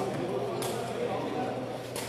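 Sepak takraw ball kicked, a sharp knock about half a second in and a lighter one near the end, over a murmur of crowd chatter.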